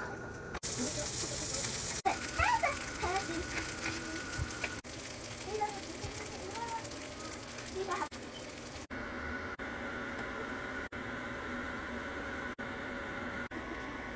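Sausage patties sizzling on a flat-top griddle, a steady hiss, with children's voices in the background. About nine seconds in the sizzling stops and a quieter steady hum remains.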